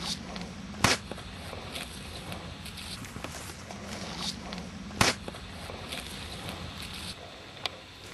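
Outdoor ambience: a steady low rumble with scattered light clicks and two loud, sharp snaps, one about a second in and one about five seconds in.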